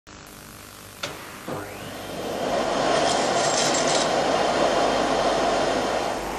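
A vacuum cleaner switched on with a click about a second in, its motor whine rising as it spins up, then running steadily with a full suction rush.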